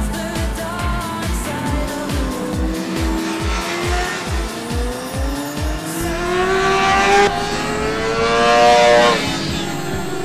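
A sport motorcycle's engine revving up, its pitch rising steadily over the second half and cutting off sharply about nine seconds in, over background music with a steady thumping beat.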